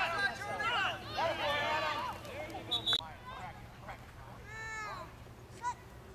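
Spectators' high-pitched excited voices calling out in rising-and-falling shouts without clear words through the first two seconds, then one more drawn-out call about five seconds in.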